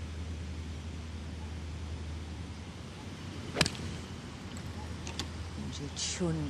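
Golf club striking the ball on a tee shot: one sharp click about three and a half seconds in, over a steady low hum of outdoor background.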